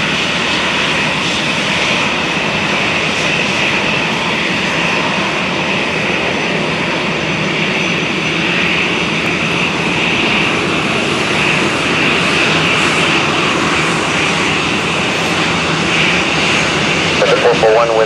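WestJet Boeing 737's jet engines running steadily at high power, a broad rushing noise with a high whine, as heard from beside the runway at takeoff.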